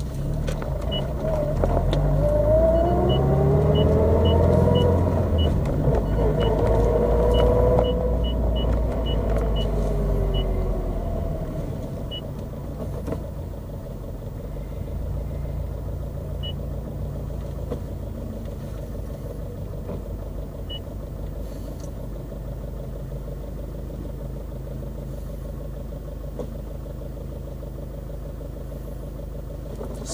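Turbocharged flat-four of a 2013 Subaru WRX STI, heard from inside the cabin through a Milltek cat-back exhaust with an aftermarket header. It pulls hard for about ten seconds, with a whine rising in pitch as it accelerates, which the owner puts down to stiff driveline bushings. After that it drops to a quieter, steady cruise, with a faint run of short high ticks early on.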